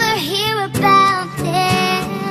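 Background song: a voice singing a wavering melody over an instrumental accompaniment.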